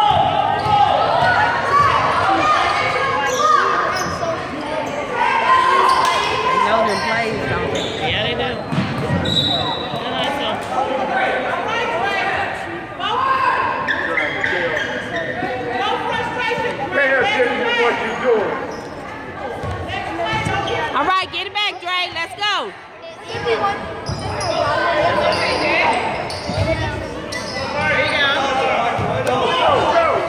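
Basketball dribbled and bouncing on a hardwood gym floor, with sneakers moving on the court, heard in a large gymnasium. Voices of players and onlookers calling out run through it.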